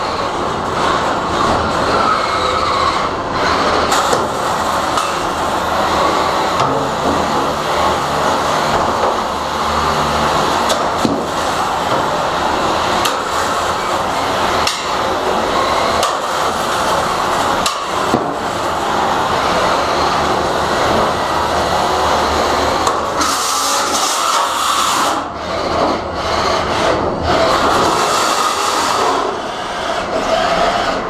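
Three-pound beetleweight combat robots fighting: a continuous rattling, grinding din of electric drive motors and machinery, broken by repeated hard knocks as the robots ram and scrape against each other and the arena walls. About 23 seconds in, a harsher, higher-pitched scraping stands out for a couple of seconds.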